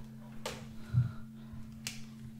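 Two sharp clicks and a soft thump, heard over a steady low hum, as a camera is switched on and handled.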